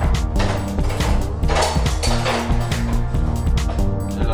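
Background music with a heavy bass line and a steady beat.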